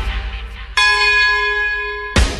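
After the band music drops away, a single bell stroke sounds about three-quarters of a second in and rings on, slowly fading. It is a struck bell tone in the song's backing track.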